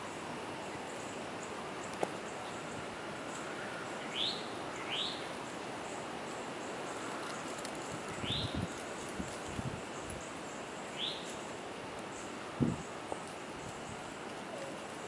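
A bird calling: four short chirps, each rising in pitch, a second or a few seconds apart, over a steady outdoor hiss of wind, with a couple of low bumps on the microphone in the second half.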